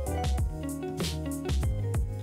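Background music with a steady beat and sustained pitched notes.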